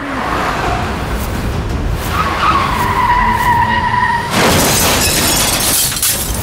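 Staged car-crash sound effects: a car's engine and tyres on the road, a long tyre screech from about two seconds in, then a loud crash with glass shattering at about four and a half seconds.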